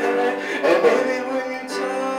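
Grand piano played in held chords that change every half-second or so.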